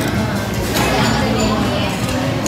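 Background music with voices, at a steady level and with no distinct event standing out.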